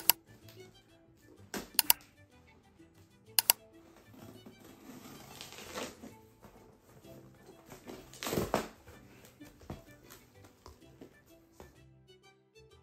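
Cardboard box being opened by hand: a few sharp snaps of packing tape in the first few seconds, then rustling and scraping of the cardboard flaps, strongest a little past the middle. Soft background music plays under it.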